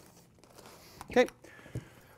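A single spoken 'okay' in a small, quiet room, followed by faint rustling and one soft low thump as a padded field-recorder bag is handled on a table.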